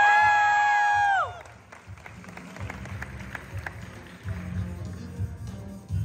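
A martial artist's long, high-pitched yell, held steady and then dropping off about a second in. Background music with a steady beat follows, with a few faint clicks.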